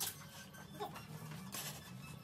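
Quiet room tone with a faint steady low hum, and one short click at the start.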